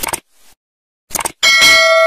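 Short click sound effects, then a bell ding that rings on steady, held tones: the notification-bell sound of a subscribe-button animation.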